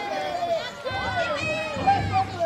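Many high voices calling out together at once in long, sliding calls, like a group of children chanting.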